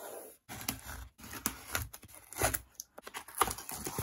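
A small cardboard parcel box being handled and opened: irregular tearing, scraping and knocking of cardboard and tape, with the crinkle of bubble wrap inside.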